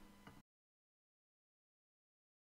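Near silence: faint room tone with a low hum that cuts to total digital silence about half a second in.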